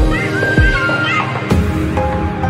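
Background music: a gliding melody over deep drum hits, changing to a new passage about one and a half seconds in.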